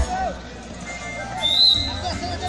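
A referee's whistle gives one short, shrill blast about one and a half seconds in, over crowd chatter and background music.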